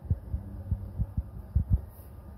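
A quick, uneven run of low, dull thumps, about seven in two seconds, over a steady low hum.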